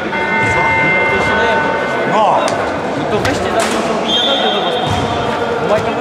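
Players' voices and basketball bounces in a gym hall. A steady, horn-like tone lasts about two seconds at the start, and a higher steady tone sounds from about four seconds in.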